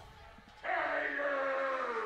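A person's long drawn-out vocal call, starting about half a second in and held for more than a second while it slowly falls in pitch.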